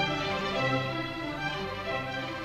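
Symphony orchestra playing a tarantella, with the violins to the fore and lower strings underneath, the notes moving on in quick succession.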